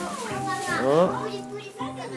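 Young children's voices as they play, with rising and falling vocal glides, over steady background music.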